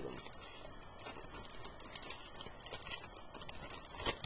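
Foil baseball card pack wrappers and cards being handled: irregular crinkling and rustling.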